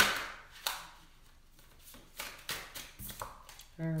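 Tarot cards handled on a tabletop: one sharp slap of a card laid down at the start, a second softer tap shortly after, then light flicks and rustles of the deck being handled, with a few quiet clicks in the second half.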